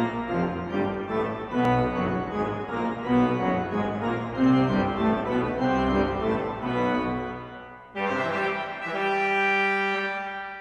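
Organ music playing a melody, then a long held chord that starts suddenly about eight seconds in and fades away.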